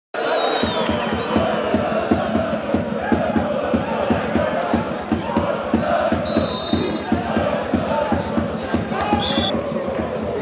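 Football supporters in a stadium chanting over a steady drumbeat, about three beats a second. Two short, shrill whistles sound past the middle.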